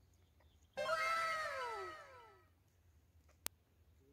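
A cat's meow: one long cry, starting suddenly about a second in and falling steadily in pitch as it fades. A single sharp click comes near the end.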